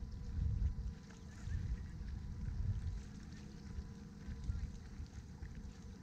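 Wind buffeting the microphone: an uneven low rumble that rises and falls in gusts, strongest near the start.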